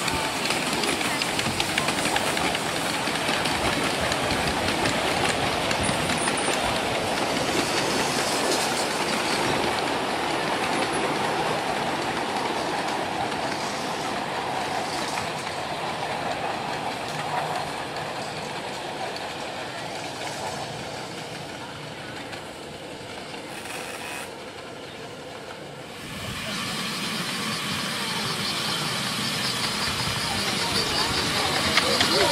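Miniature steam train running on 7¼-inch-gauge track, its wheels clicking over the rail joints and the carriages rumbling. The sound fades over about twenty seconds, is quietest a few seconds before the end, then grows louder again as a train comes close.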